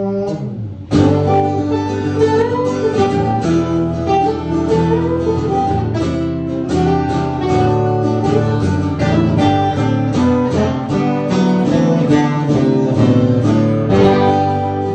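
Two acoustic guitars playing country music together, strummed chords with a picked melody line moving over them. The playing dips briefly just before a second in, then comes back in full.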